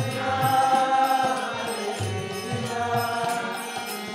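Devotional kirtan: a man's voice chanting a mantra over a steady harmonium drone, with a hand drum beating low thumps about twice a second.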